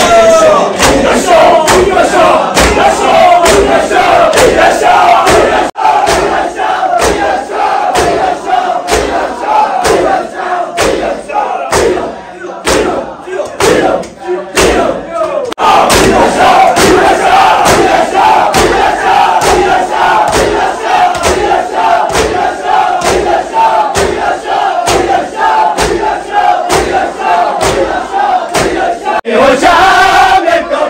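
A crowd of men's voices chanting a Muharram lament together, over the sharp hand slaps of chest-beating (matam) in a steady beat of about two a second. The chanting thins for a few seconds near the middle, then comes back full.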